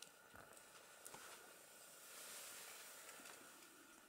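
Near silence: faint outdoor ambience with a couple of soft clicks.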